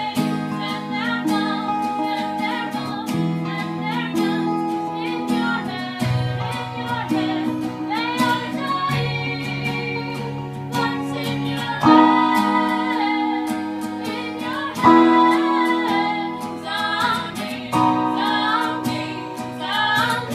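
Two acoustic guitars strummed together in changing chords, with singing over them.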